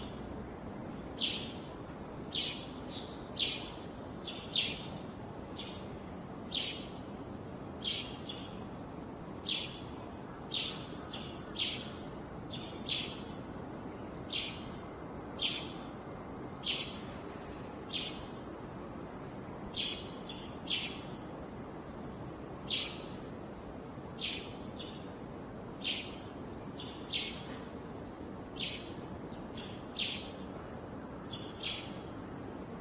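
Steady machine noise from a high-speed PET bottle unscrambler line. Short, high-pitched chirps repeat irregularly about once a second over it and are the loudest thing heard.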